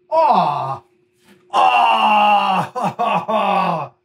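A man's wordless vocalizing: a short falling 'oh' in the first second, then a long, drawn-out groan that drops in pitch near the end.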